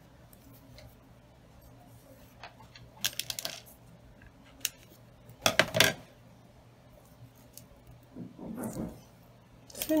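Handling noise of hand bow-making: a few light clicks and a short rattle about three seconds in, then a louder, briefly ringing clatter of small hard objects about halfway through as the thread is finished off and the ribbon piece is set down, with a soft rustle near the end.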